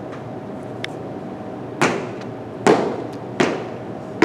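Heavy footsteps on a hard tile floor: three loud, evenly spaced steps about three-quarters of a second apart, starting about halfway through, over a steady room hum.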